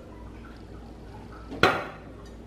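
Water poured from a pitcher into a small nonstick frying pan, a faint trickle and splash. A single sharp knock comes near the end.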